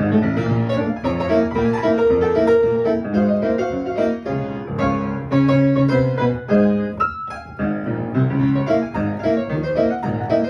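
Upright acoustic piano playing a ragtime piece, sight-read from sheet music, with an alternating low bass under the melody. The playing thins out for a moment about seven seconds in, then carries on.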